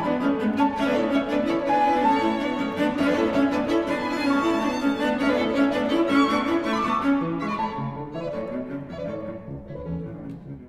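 Piano trio playing classical chamber music: bowed cello and violin with piano. The music grows quieter over the last few seconds.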